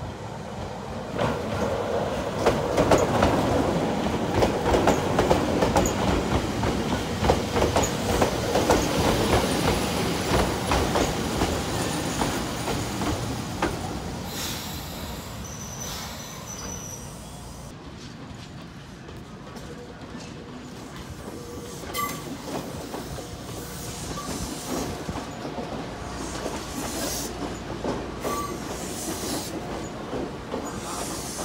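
Ex-Tokyu 8500 series electric train running in over the tracks, its wheels clicking over rail joints. It is loudest in the first half, then slows with a brief high squeal near the middle. Occasional clunks follow.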